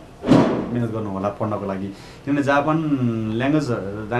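A man talking, with a short pause about halfway through. Just after the start there is one sudden, short burst of noise, the loudest moment.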